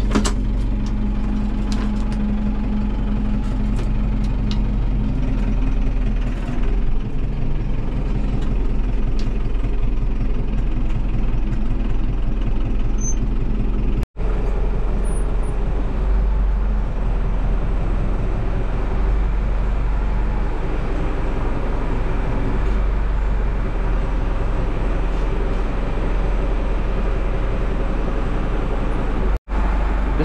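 New Holland tractor's diesel engine running steadily, heard from inside the cab. The sound drops out for an instant twice, about 14 seconds in and near the end.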